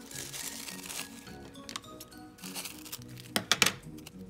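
Pink tissue paper rustling and crinkling as it is handled, over steady background music. Near the end comes a quick cluster of loud, sharp crackles as scissors cut into the tissue.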